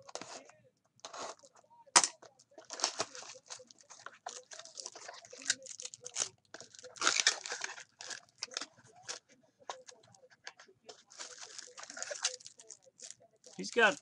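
Plastic shrink-wrap and cardboard of sealed trading-card mini-boxes crinkling and tearing as they are opened by hand, in many irregular short crackles, with a sharp snap about two seconds in.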